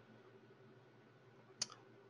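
Near silence with faint room hiss, broken about one and a half seconds in by one short click at the computer.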